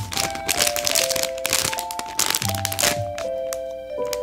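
Background music with a simple melody of held notes, over the crinkling of the clear plastic packaging of a squishy being handled.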